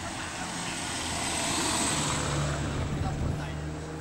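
Small van driving past close by: engine and tyre noise swells to a peak about two seconds in, then fades, over a low steady engine drone.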